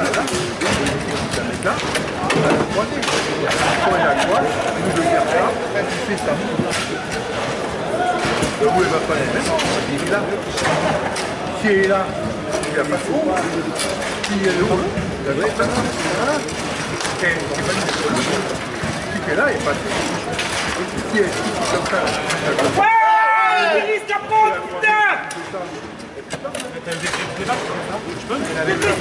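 Hall chatter from many people, with sharp clacks of the ball and rod figures on a table-football table throughout. A single close voice stands out for about two seconds near the end.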